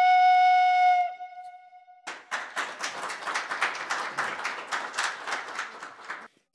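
Frula (Serbian wooden shepherd's flute) holding a long final note that stops about a second in and dies away in the room's echo; then audience applause for about four seconds.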